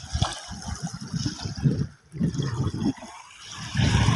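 Small waves washing in on a shell-strewn sandy shore, coming and going in irregular surges.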